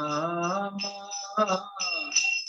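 A man singing a Hindu devotional chant in a slow, sliding melody, with small hand cymbals ringing along in a steady high tone.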